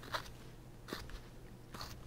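Hand carving blade slicing small shavings from basswood: a few faint, short, crisp cuts about a second apart.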